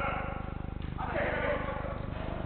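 Players' voices calling across the court, with one long shouted call about a second in, over a steady low electrical buzz.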